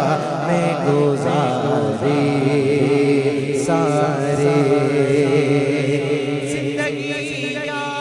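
Male voices chanting a sustained hummed drone, with a wavering melodic vocal line over it and no words: the vocal-only backing of a devotional naat. A new held note enters a little before halfway.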